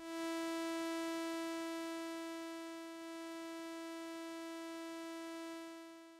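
A single sustained note from the AudioRealism reDominator software synthesizer, one steady pitch rich in overtones. Its volume envelope eases down over the first three seconds to a level slightly below the sustain, holds steady, then fades out on release near the end.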